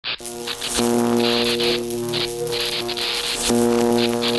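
A steady electric buzz from on-stage amplification, starting about a second in and briefly restarting with a click near the end, with short bursts of higher hiss over it.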